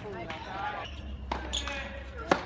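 A tennis ball bouncing once on a hard court, a single sharp knock a little past the middle, with people talking in the background.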